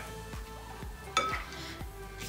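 Potato masher pressing down into canned whole peeled tomatoes in a ceramic bowl, a few soft knocks against the bowl as the tomatoes are broken up.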